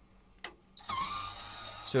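Two short clicks, then about a second in the electric motor of a MaxxAir remote-controlled roof vent fan starts and runs with a steady whine as the unit switches on and winds its roof light open.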